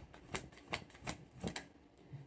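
A deck of tarot cards being shuffled by hand: a run of light, sharp card clicks, about four distinct ones spaced evenly across two seconds.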